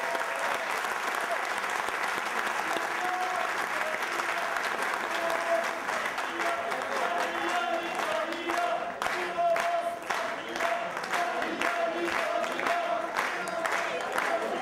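Audience applauding steadily. From about halfway through, crowd voices rise over the clapping and the claps grow sharper.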